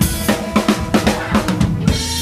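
Drum kit played live with a band: a quick run of snare and drum hits, about five a second, over the band's held notes.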